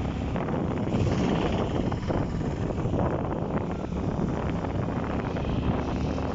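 Steady wind rushing over the microphone of a camera on a moving motorcycle, with the engine and road noise running underneath.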